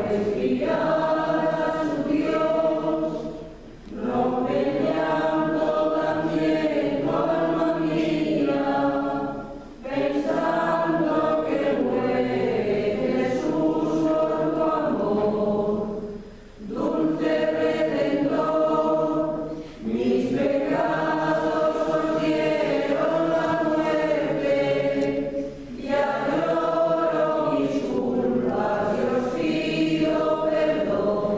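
A choir singing several long phrases, with short breaks between them.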